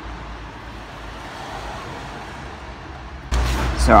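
Steady background noise, an even hiss over a faint low hum, with nothing sudden in it. A stronger low rumble comes in near the end, just as talking starts.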